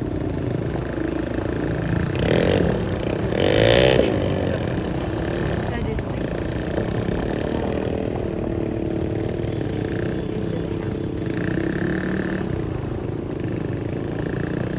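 Small engines of a youth side-by-side UTV and a child's dirt bike running steadily as they ride off down a gravel drive, with a louder patch about two to four seconds in.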